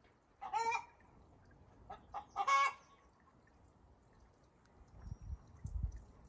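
Chicken clucking: two short pitched calls, about half a second and two and a half seconds in, with a few faint clicks between them. A low rumble comes in near the end.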